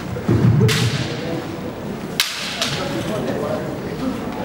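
Bamboo shinai striking each other in sharp clacks, about 0.7 seconds in and again a little past the middle, with a loud, deep thud just before the first clack.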